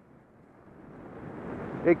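Rushing noise of skiing downhill, growing steadily louder as speed builds.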